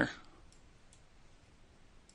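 Two faint computer mouse clicks in the first second, over quiet room tone.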